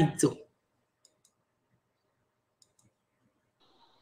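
A short spoken word, then near silence on the call line, broken only by two faint clicks; a faint high tone comes in near the end.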